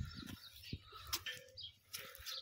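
Faint chirping of small birds, a few short scattered calls, with a couple of soft clicks near the middle.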